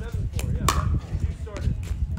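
A pickleball paddle hits the plastic ball with a sharp pop about two-thirds of a second in. A fainter knock follows about a second later.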